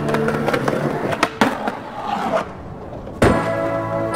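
Skateboard wheels rolling on concrete with two sharp board clacks a little over a second in, then one loud board impact just over three seconds in. Background music fades early and comes back after the impact.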